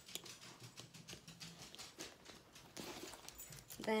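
Faint handling sounds of a leather purse strap being unclipped: small scattered clicks from its metal clasp, with a brief rustle of the strap near the end.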